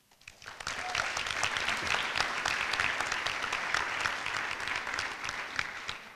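Audience applauding. The clapping swells up within the first second, holds steady, and dies away near the end.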